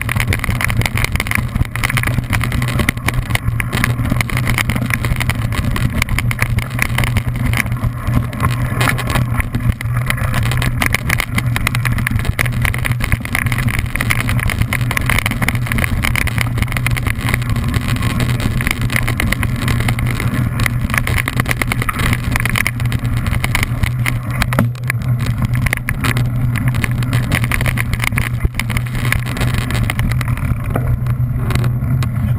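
Mountain bike riding down a rough dirt singletrack, heard through a handlebar-mounted camera: a steady low rumble of tyre and wind noise with constant fine rattling from the trail jolting the bike and mount.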